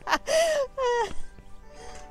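A woman laughing, two short breathy laughs falling in pitch in the first second, over steady background music.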